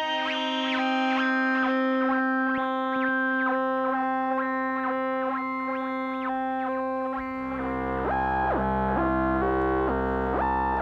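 Moog Muse synthesizer playing a held oscillator-sync note, its bright timbre shifting in steps about twice a second as a slewed LFO moves oscillator 2's frequency. About seven seconds in, a low bass note joins and the sync harmonics sweep up and down.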